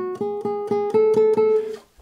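Nylon-string classical guitar playing a tremolando scale: each note is plucked several times in quick, even repetition, about seven plucks a second, before moving up to the next note. The playing stops just before the end.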